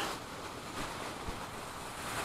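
Faint, steady outdoor background of wind and small lake waves: an even hiss with no distinct events.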